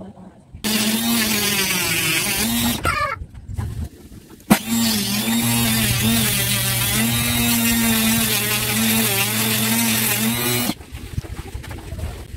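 Small handheld rotary tool drilling into a wooden frame: the motor runs with a steady whine for about two seconds and stops, then starts again with a click and runs for about six seconds, its pitch wavering as the bit bites into the wood.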